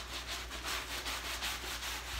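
Soapy nylon wash cloth scrubbed back and forth on a forearm, working up lather: a soft, rhythmic rubbing at several strokes a second.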